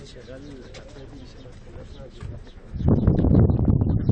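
A dove cooing: a few low, arching notes in the first second or so. About three seconds in, a loud low rumbling noise takes over.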